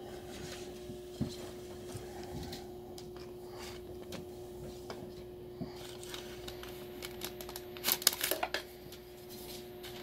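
Quiet room tone with a thin steady hum, a few scattered light ticks, and a short run of sharp clicks and scrapes about eight seconds in.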